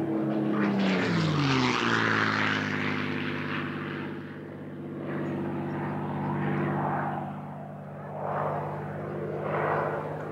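Supermarine Spitfire's V12 piston engine in a close, low fly-past, its note dropping in pitch as it passes in the first two seconds. Then a steadier propeller-engine drone follows, swelling and fading as the warbirds fly around.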